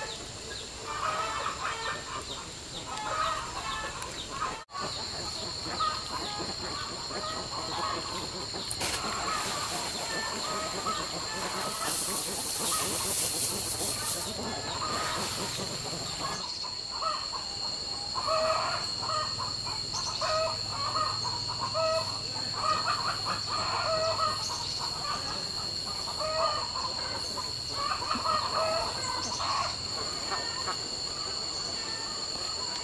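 Farm poultry calling over and over in short clucking bursts, over a steady high insect drone. A brief rustle comes near the middle.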